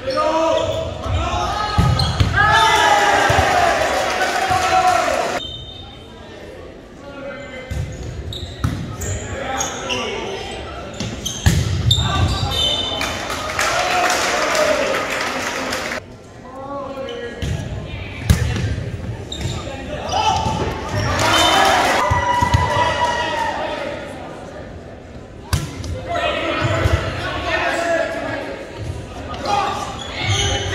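Volleyball game in a gymnasium: players and spectators shouting and cheering, with sharp thuds of the ball being struck and hitting the floor, echoing in the hall. The sound drops out suddenly twice, about five and sixteen seconds in.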